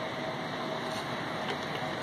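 Steady mechanical whir with a faint high hum, level and unchanging.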